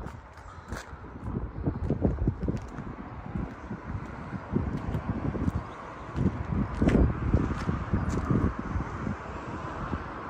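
Footsteps on a tarmac forecourt, irregular soft thuds, with wind buffeting the microphone of a handheld camera and a faint steady background hum.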